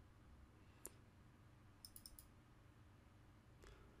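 Faint computer mouse clicks over near-silent room tone: a single click about a second in, then a quick run of clicks around two seconds in.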